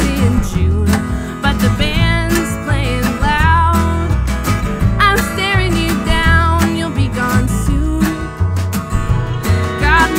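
A country-folk band playing live: strummed acoustic guitar, upright bass and drums keeping a steady beat, with fiddle and a woman singing the lead vocal.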